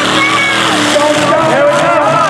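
Freestyle mud truck's engine running hard as the truck accelerates across the dirt arena toward the ramp, heard under voices from the crowd.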